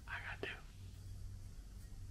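A short, faint, breathy vocal sound from a person in the first half second, then only a low steady hum.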